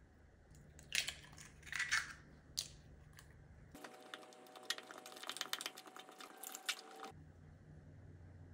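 An egg cracked on the rim of a Pyrex glass measuring cup with a few sharp cracks in the first two seconds. From about four seconds in, a utensil stirs brownie mix, oil and egg in the glass cup, with rapid clicking and scraping against the glass and a faint ringing of the glass. The stirring stops about a second before the end.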